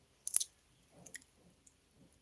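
A few faint, short clicks and small noises close to the microphone in a quiet room, the loudest a sharp one about a third of a second in.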